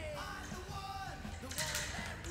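Background music: a rock-style song with a bending melodic line over a steady bass.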